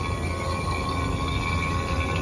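HVAC vacuum pump running with a steady hum, evacuating the rooftop unit's refrigerant circuit after brazing.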